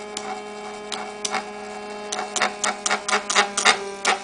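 Small one-magnet Bedini-style pulse motor running with a steady hum. Irregular sharp clicks and taps, more frequent in the second half, come as the harvesting coil is held and shifted by hand to keep 20 LEDs lit.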